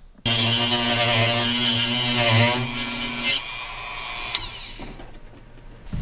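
Dremel rotary tool cutting a slit in the plastic side of a tractor cab's storage cubby: the motor runs at a steady pitch under a grinding hiss, its note wavering briefly under load about two seconds in. After about three and a half seconds the motor note stops and the remaining sound fades out.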